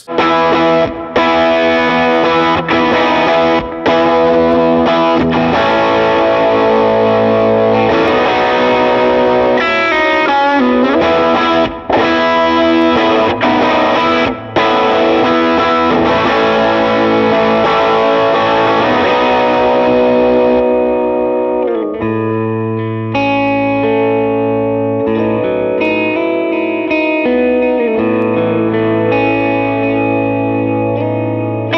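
PRS SE Hollowbody II Piezo electric guitar played through its magnetic 58/15 S humbucking pickups into an Axe-FX III amp modeller, with effects and some drive. It plays ringing chords and single-note lines with a bent note near the middle, and the tone turns darker, with less top end, about two-thirds of the way through.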